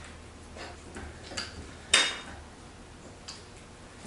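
A few light metallic clicks and clinks from a horizontal metal-cutting bandsaw being handled at its vise and frame, the sharpest one about two seconds in with a short high ring. A faint steady low hum runs underneath.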